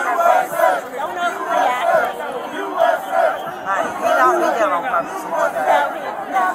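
A large crowd of many voices shouting over one another without a break.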